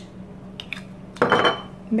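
A brief clatter a little past the middle, a metal spoon knocking against a glass bowl of rice, with a faint ringing note from the glass.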